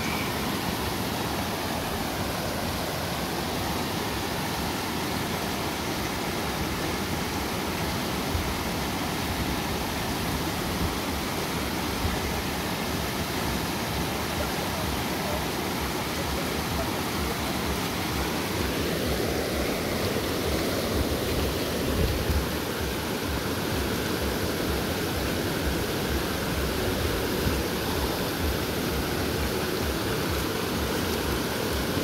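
Shallow rocky creek rushing steadily over stones and small riffles: a continuous, even wash of flowing water.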